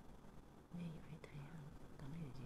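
A low voice murmuring faintly, too soft for words to be made out, beginning about a second in over a quiet background hum.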